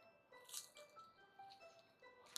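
Very faint background music of scattered bell-like notes. About half a second in comes one faint crack: a crisp deep-fried sabudana vada being broken open by hand.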